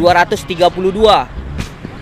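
A man speaking Indonesian for about the first second, then a short lull, over steady background music.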